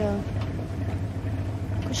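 Steady low engine rumble under the scene, with a woman's short spoken syllable at the start.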